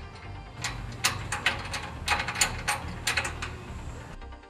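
Sharp metallic clicks and clanks of scaffold hoist track parts and quick-bolt fittings being handled and fastened, about a dozen irregular clicks over three seconds, over background music.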